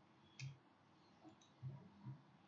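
Computer mouse clicking over near silence: one sharp click about half a second in, then a few faint low thuds.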